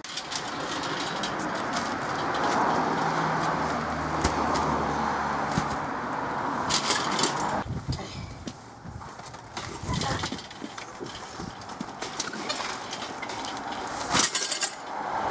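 A passing vehicle: a steady rush with a low hum that cuts off about seven and a half seconds in. Then scattered knocks and rattles from a steel mesh garden wagon as a heavy bale of compressed peat moss is hoisted onto it.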